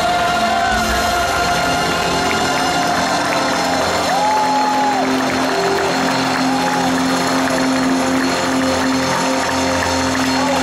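Live rock band with electric guitars and drums sustaining held chords as the song winds down, with the arena crowd cheering and a few whoops about four seconds in.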